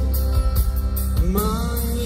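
Live pop song played by a band with strings, electric guitar, drums and keyboards, with a steady heavy low end and regular drum strokes; about a second in, a male singer's voice slides up into a long held note.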